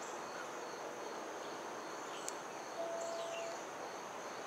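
Outdoor ambience dominated by a steady, high-pitched insect chorus, typical of crickets, over a faint even background hiss; a brief steady tone sounds once near the end.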